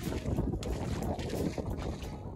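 Rubber boots squelching and splashing through wet mud and shallow puddles in irregular steps, with wind buffeting the microphone.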